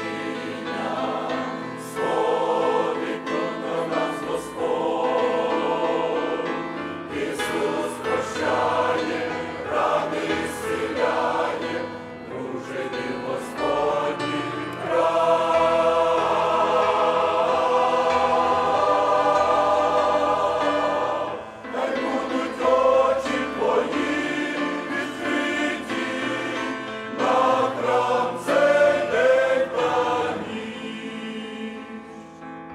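Mixed church choir of men's and women's voices singing a hymn in Ukrainian in chords, with one long, louder chord held about halfway through before the singing drops briefly and goes on.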